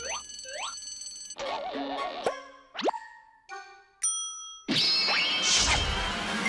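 Cartoon sound effects over sparse music: a few quick rising boing-like glides, a wobbling tone and a fast upward swoop, then a loud burst of full music near the end as the face-off begins.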